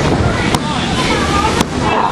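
A small crowd shouting during a professional wrestling match. Two sharp cracks cut through, one about half a second in and one a second later.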